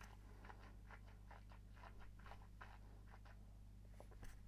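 Near silence: faint, soft mouth and lip sounds of someone tasting whisky, over a steady low room hum.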